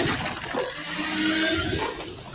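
Movie trailer soundtrack playing back: noisy battle-scene sound effects, with a steady low tone held through the middle.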